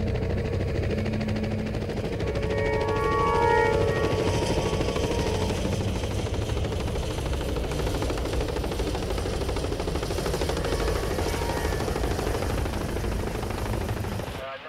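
Steady, dense rumbling drone of an aircraft in flight, with music under it; a few held musical notes stand out over the drone a few seconds in.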